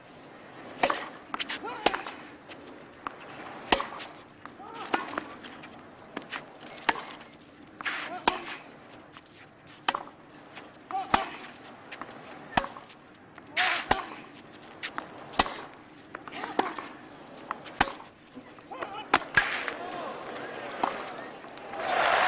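Tennis ball struck back and forth by rackets in a long baseline rally on a clay court, a sharp hit about every second or second and a half. Crowd applause breaks out right at the end as the point finishes.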